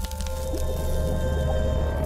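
Music sting for an animated logo: a deep bass held under several sustained tones, fading out just after the end.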